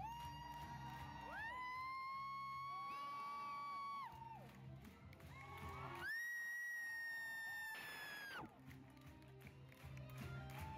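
Live musical-theatre curtain-call music from the band, with two long held high notes that each slide up at the start, heard from the audience seats with some cheering underneath.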